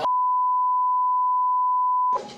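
A censor bleep: one steady, pure, single-pitch electronic tone that cuts in abruptly over the clip's audio and holds unchanged, masking speech.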